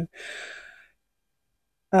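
A short, soft, breathy sigh, lasting under a second.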